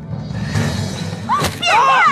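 A single sharp crash about a second and a half in, as a man is slammed down onto a wooden table, with a man's cry around it, over background music.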